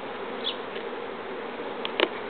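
A swarm of honeybees flying around a hive as they move into it: a steady, even hum of many bees.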